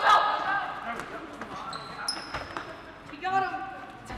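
Children shouting and laughing during a scuffle on a hard floor, with scattered thuds and knocks and a brief high squeak about two seconds in. A child's high-pitched call comes near the end.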